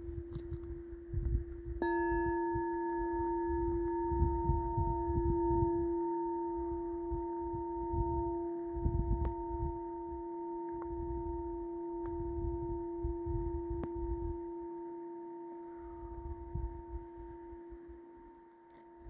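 Hand-held clear crystal singing bowl sounding one steady ringing tone. About two seconds in, a strike adds higher ringing tones; the highest fades over the next few seconds while the rest sustain. A low rumble comes and goes underneath.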